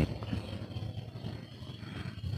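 Low steady mechanical rumble with a faint, thin high whine above it, and a few faint ticks.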